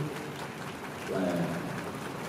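A pause in a man's speech through a microphone in a concert hall. One short word comes about a second in, and a steady hiss of hall ambience fills the gaps.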